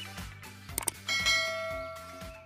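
Subscribe-animation sound effects: a quick double mouse click just before a second in, then a notification-bell chime that rings out and fades, over soft background music.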